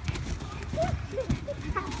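Young children calling and squealing, with scattered thuds of feet stomping and running on sand.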